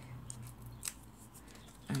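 Faint, brief clicks and crackles of paper and adhesive foam dimensionals being peeled off their backing sheet and handled, over a faint low hum.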